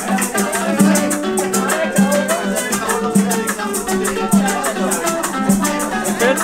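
Live Cuban band playing: guitar with maracas shaking a steady, even rhythm over bass notes.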